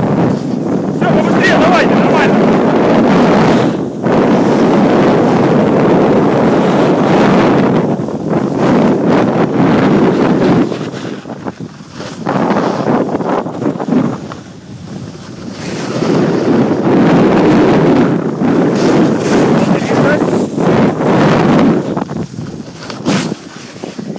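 Rush of wind buffeting a phone's microphone while riding downhill, mixed with the scrape of snow underfoot. It is loud and steady, easing for a moment several times as the rider slows.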